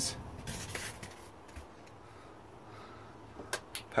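Faint handling noise: rubbing in the first second, then a few light clicks near the end.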